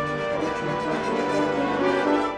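A full British-style brass band of cornets, horns, euphoniums, trombones and tubas playing loud sustained chords, swelling toward the end.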